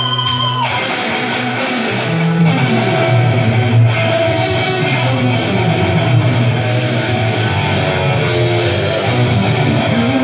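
Live rock-metal music: an amplified electric guitar plays an instrumental passage over a strong low end, with a held note ending about half a second in.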